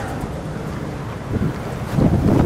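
Wind buffeting the microphone: a steady low rumble with a hiss over it.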